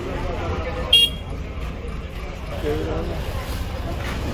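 Busy street-market background of traffic and crowd noise, with one very short, high-pitched horn toot about a second in and faint voices later.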